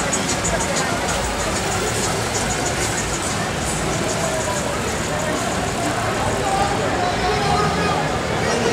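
Busy street ambience: steady crowd chatter mixed with cars rolling slowly past and engines running at low speed.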